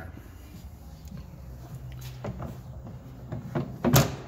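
Galley cabinet door being shut, with a few light knocks and then a sharp bang near the end.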